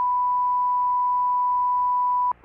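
Continuous 1,000 Hz line-up test tone on a broadcast holding loop: one pure, unchanging pitch at a steady level.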